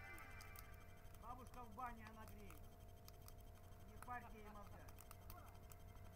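Faint, distant voices of people talking in two short spells, over a low steady hum, with a few light crackles from a burning bonfire.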